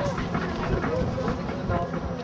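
Faint, distant voices of rugby spectators and players, over a steady low rumble of wind buffeting the microphone.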